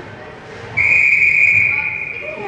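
Ice hockey referee's whistle: one long, steady blast that starts about three-quarters of a second in and lasts over a second, signalling a stoppage in play.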